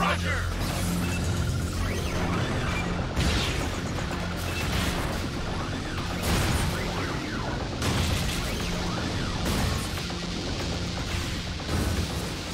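Cartoon soundtrack: dramatic background music over a run of mechanical clanks, crashes and whooshing effects of robots locking together into one giant combined robot.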